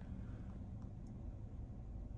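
Faint, steady low rumble of background noise inside an electric car's cabin as it creeps forward. No parking-sensor beep or proximity chime sounds, because the vision-only system is giving no audible warning.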